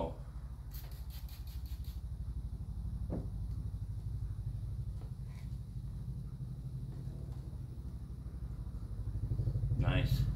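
Trigger spray bottle of quick detailer misting onto car paint in a quick run of about seven sprays, then a single click, over a steady low rumble.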